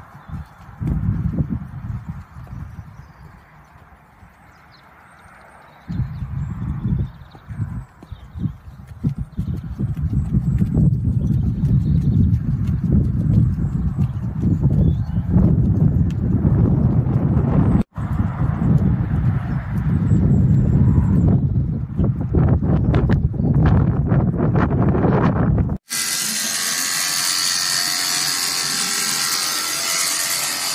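A ridden horse's hoofbeats on an arena surface, under loud, irregular low rumbling noise. About 26 s in, after a sudden cut, electric horse clippers run with a steady buzz.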